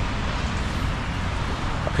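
Steady noise of a wet city street, traffic hiss and rain-soaked road noise, with wind rumbling on the microphone. A man's voice starts right at the end.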